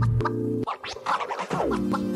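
Background music with held tones. About a third of the way in they break off for roughly a second of short, scratchy strokes, then slide down in pitch and return.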